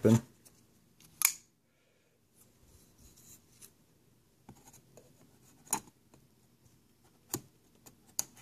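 A knife blade cutting the tape seals on a cardboard retail box: a few sharp scrapes and clicks with faint scratching between them.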